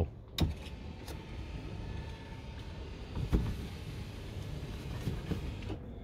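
Electric lift motors of a drop-down campervan bed running as the bed lowers. They make a steady drone with a click as they start and a knock about halfway, and stop just before the end.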